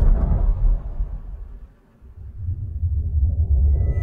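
Horror-film trailer soundtrack: a deep low rumble under dark ambient music. It fades almost to nothing about two seconds in, then swells back, with faint high sustained tones entering near the end.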